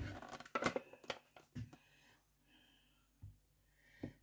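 Handling noises around a glass jar in a kitchen: a few sharp clicks and knocks in the first two seconds, then faint rustling and one soft knock near the end.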